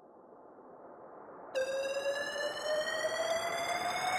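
Electronic music intro build-up: a noise sweep swells up steadily, and about one and a half seconds in a synth tone enters and glides slowly upward over it, leading into the track.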